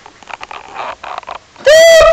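Ginger cat giving a short meow right at the microphone near the end, so loud it distorts, with a rising then level pitch. Before it, soft scuffing as the cat shifts against the camera.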